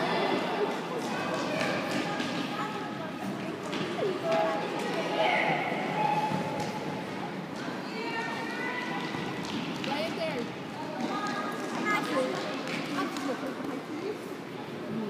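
Indistinct voices of children and adults calling and shouting, echoing in a large sports hall, over the thuds of a football being kicked and bouncing on the hard floor.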